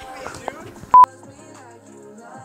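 A short, loud electronic beep at one steady pitch, about a second in, over background music.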